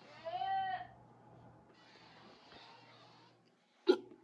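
A short high-pitched vocal sound, one drawn-out note a little over half a second long that rises and falls slightly. Then, near the end, a single sharp knock, the loudest sound here.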